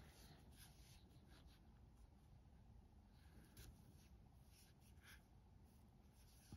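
Near silence with faint rustles and small ticks of a metal crochet hook and yarn being worked into stitches.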